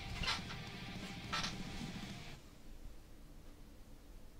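Two brief rustles of a t-shirt being handled and held up, the first just after the start and the second about a second and a half in. Faint background music fades out a little past halfway.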